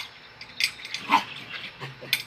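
A dog barks once, short and sharp, about a second in, among small metallic clicks from a combination key box's dials and latch being worked.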